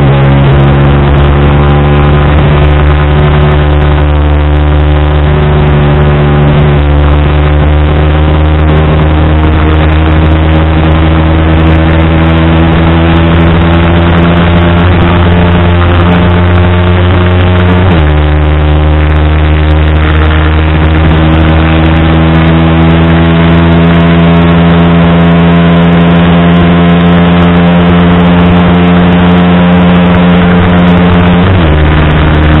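Yamaha YZF-R15 V3's 155 cc single-cylinder engine pulling at full throttle, its pitch climbing slowly. A little past halfway it changes up from fourth to fifth gear: the pitch drops briefly, then climbs again.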